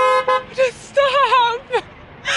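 A car horn held on one steady note, cutting off just after the start, followed by a high voice wavering up and down in pitch.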